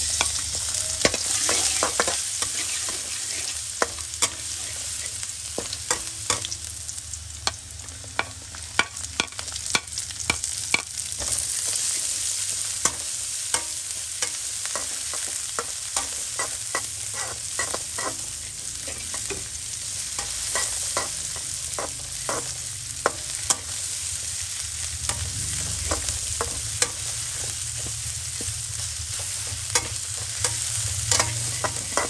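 Minced garlic, shallots and chillies sizzling in hot oil in a metal wok, stirred with a metal spatula that scrapes and clicks against the pan many times.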